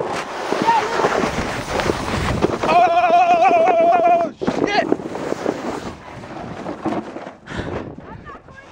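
Plastic sled sliding fast down a snowy hill, a rushing scrape of snow with wind on the microphone. About three seconds in the rider lets out a long, wavering yell lasting over a second, the loudest sound, followed by a short shout, and the sliding goes on more quietly after it.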